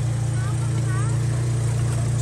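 A vehicle engine idling steadily, a constant low hum with a fast even pulse, under faint voices.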